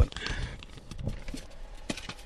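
A paper envelope being handled and opened: soft rustling of paper with a sharp click at the start and a few clicks near the end.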